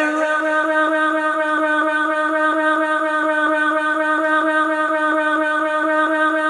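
Isolated a cappella female vocal holding one long steady note, with a faint regular pulse about four or five times a second.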